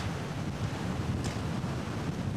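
Wind blowing across the microphone, a steady low rush.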